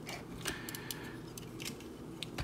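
Several light plastic clicks and taps from a Planet X PX-09S Senectus transforming figure as its parts are rotated and folded by hand.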